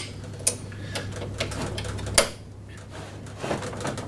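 Small clicks and light rattles of lawnmower handle fittings (a wire pigtail cable clip, washer and bolt) being handled and fitted by hand on the handle tube, with a sharper click just after two seconds in.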